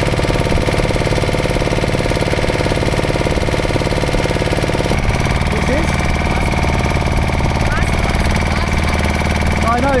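Small fishing boat's engine running steadily with a thudding, machine-like beat; its note changes about halfway through. Faint voices talk over it.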